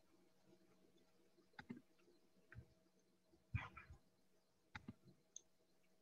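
Faint computer mouse clicks, a handful of separate clicks spread over the seconds as drop-down menu options are picked, the loudest pair about three and a half seconds in. A faint steady electrical hum runs beneath.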